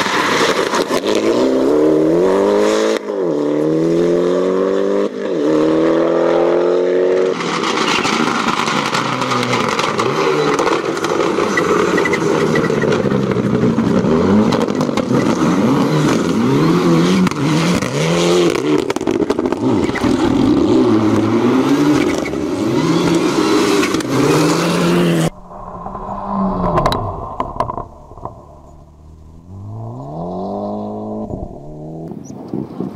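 Rally cars at full throttle on a gravel stage: a turbocharged four-cylinder engine revs up through several gear changes, then a second car's engine rises and falls as it slides through a corner, with gravel noise under the engine. About 25 seconds in the sound drops suddenly to a fainter, more distant car whose engine rises again near the end.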